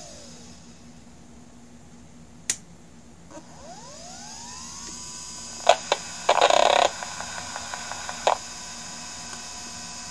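A Maxtor 20 GB hard drive's spindle motor and head voice coil, picked up electromagnetically by a telephone-listener coil and played through its small amplifier speaker. A fading falling tone and a sharp click are followed by a rising whine as the spindle spins up, settling into a steady tone. Around the middle come clicks and a half-second buzzing burst, with another click after it: the heads seeking back and forth as the drive loads its firmware from the reserved area on startup.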